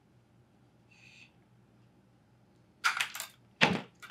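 Pliers snipping through a thin wire rod: a burst of sharp clicks about three seconds in, then a single louder, deeper knock as the pliers are set down on the wooden worktable.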